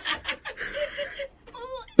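A woman's wordless, strained voice while trying to lift a chair: a breathy moan with a few short giggling pulses, then a brief whine near the end.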